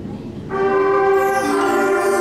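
Middle school concert band playing. A chord fades, then about half a second in the band enters with a sustained held chord, and a lower note joins about a second later.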